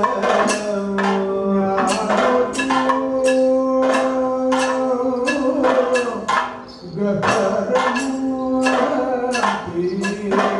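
Kathakali accompaniment: a male voice sings long, held and gliding notes over a dense run of percussion strokes. The music dips briefly past the middle, then picks up again.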